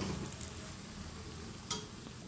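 Steel spoon stirring gram flour into hot ghee in a steel kadhai, faint scraping with a light sizzle as the besan begins to roast. A single sharp click comes about one and a half seconds in.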